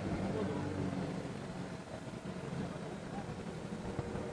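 Helicopter running on the ground after landing, a steady low hum, with indistinct voices in the background.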